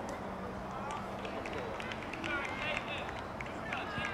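Voices of players and spectators calling across a soccer field over a steady outdoor hiss, with a few higher calls in the second half.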